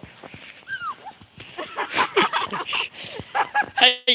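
Girls' high-pitched laughter and squeals: a falling squeal about a second in, then short repeated bursts of laughing that grow louder through the second half.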